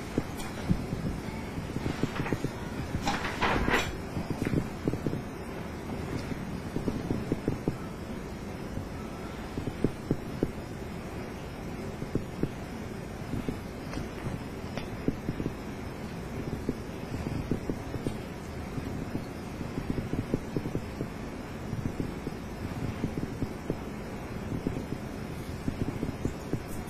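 Faint rustling and small handling crackles on a clip-on microphone worn on clothing, over a steady low background noise, with a few louder rustles about two to four seconds in.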